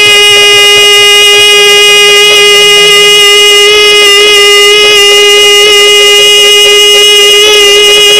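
One long, loud note held steady at the same pitch by the Yakshagana singer (bhagavata), over a fainter steady drone. Soft drumming underneath stops about three seconds in.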